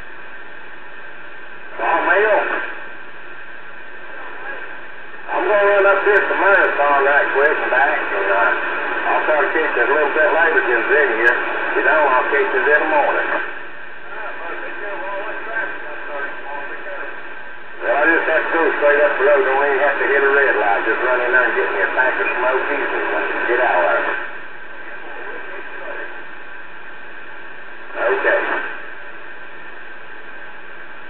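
Connex CX-3400HP CB radio receiving on channel 34: voices of other stations come through its speaker in two long transmissions and two short bursts, with a steady hiss of static between them.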